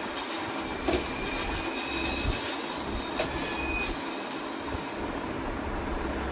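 Hard plastic toys knocking and clacking a few separate times as a baby handles them, over a steady background noise.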